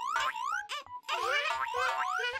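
Cartoon boing sound effects: several short springy tones, each rising in pitch, in quick succession.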